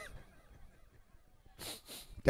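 Faint room tone, then about one and a half seconds in a man's short, sharp breath close to a handheld microphone.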